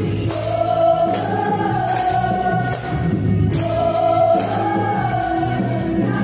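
A Yamaha stage piano playing a worship song in held chords, with singing voices carrying long phrases over it.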